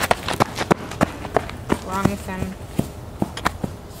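Footsteps on a gravel road, short sharp steps at about three a second.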